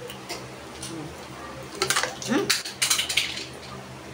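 A plastic water bottle being handled and its cap opened just before drinking: a cluster of sharp clicks and rattles lasting just over a second, starting about two seconds in, with a brief rising squeak among them.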